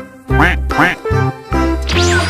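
Upbeat background music with a steady bass beat and bouncy pitched notes, with two short sliding, cartoon-like calls over it about half a second in.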